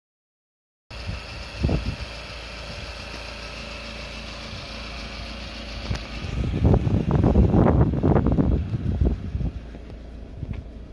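Engine idling steadily. From about six and a half to nine and a half seconds, loud irregular rumbling on the microphone rises over it.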